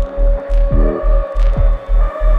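Deep 140 bpm dubstep: a throbbing sub-bass pulsing about three times a second under a steady high synth tone, with short falling sweeps and a couple of sharp percussive hits.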